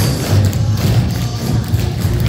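Music playing over a group of tap shoes striking a wooden floor, many taps and thuds from several dancers at once.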